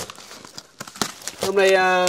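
Cardboard packaging being torn and pulled off a framed picture: a rip at the start, then scattered crackling rustles of the cardboard. A man's voice speaks near the end.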